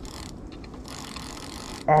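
Spinning fishing reel working with a fine clicking whirr in two spells, a short one at the start and a longer one through the middle, while a strong pike is played on the bent rod.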